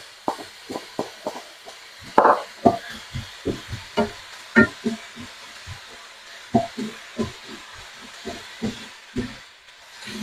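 Wooden spatula knocking and scraping against a nonstick frying pan as chicken and vegetable filling is stirred: irregular taps, about two or three a second.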